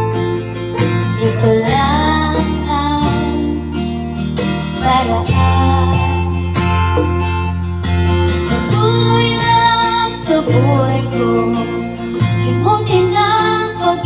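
A woman singing a melody into a Hyundai Platinum DM-8000 handheld dynamic microphone over backing music with guitar and a bass line that changes chord every few seconds.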